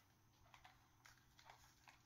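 Near silence, with a few faint, short clicks from a compact plastic selfie stick tripod being handled.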